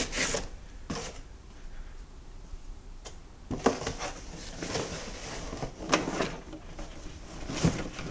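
Cardboard box flaps being folded back and rubbed by hand, with scrapes and short knocks as a radio is shifted and lifted out of its packing box; the sharpest knocks come about three and a half seconds in and near the end.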